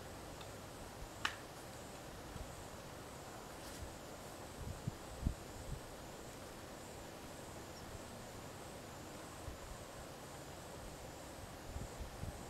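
Faint outdoor ambience at a backyard bird feeder, with one short high chirp about a second in and a few soft low thumps around the middle.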